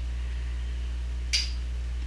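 A single sharp click about halfway through, over a steady low hum; the click is of unknown origin, a stray clicking sound.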